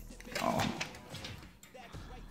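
Plastic protective film being peeled off a smartphone screen, a few short crackles, over faint background music.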